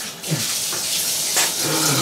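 Bathtub faucet running, water pouring and splashing steadily over a person's head and face held under the spout. A short vocal sound about a third of a second in, and a voice begins near the end.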